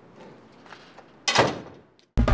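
A few faint knocks, then one sudden loud slam-like hit about a second and a quarter in, fading away over about half a second.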